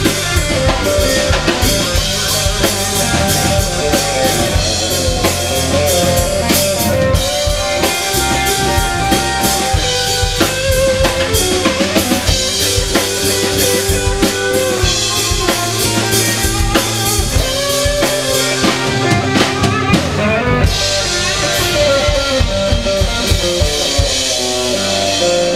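Live band playing: electric guitars, bass guitar and drum kit, with a steady drum beat under held guitar notes.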